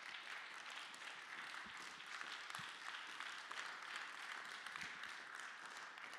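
Congregation applauding steadily, a dense patter of many hands that tails off near the end.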